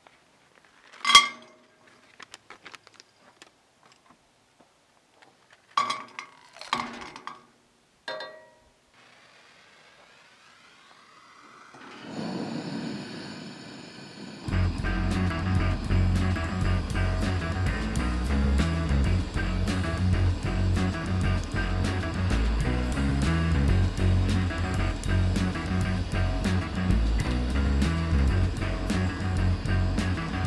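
Pieces of indium metal clinking against a cast-iron skillet: one sharp ringing clank about a second in, then a few lighter clinks. A steady hiss from the propane camp stove's burner then builds, and from about halfway through it is covered by loud music with guitar, bass and drums.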